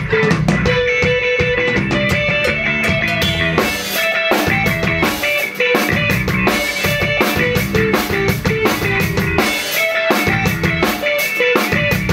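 A live band playing instrumental rock: two electric guitars play short, repeating note figures over a drum kit. The cymbals and drums become much busier about four seconds in.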